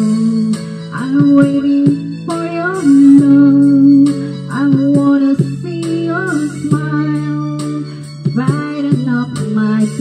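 Karaoke backing track with a guitar melody over sustained low notes, and a woman singing along into a handheld microphone.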